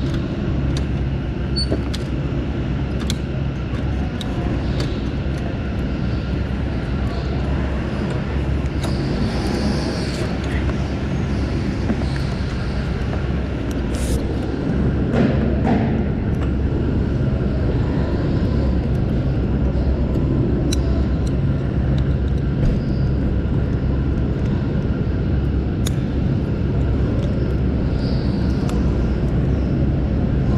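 Rental go-kart's motor running steadily under the driver's seat as the kart laps an indoor track, with short rattles and clicks from the chassis throughout.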